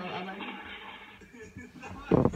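Speech: a short word from a person in the room over the talk of a clip playing from a laptop's speakers.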